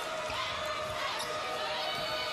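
Basketball being dribbled on a hardwood court, with a few short knocks over the steady murmur of an arena crowd.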